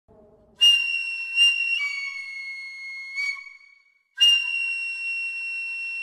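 Shrill Japanese bamboo flute playing long, held high notes: a note starts sharply about half a second in and steps down to a lower one that fades out by about four seconds, then after a brief silence a new high note is held.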